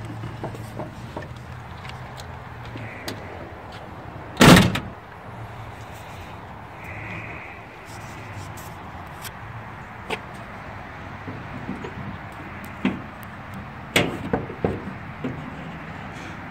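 The driver's door of a 1966 Ford Galaxie 500 shut with a single solid slam about four and a half seconds in, followed later by a few light clicks and taps.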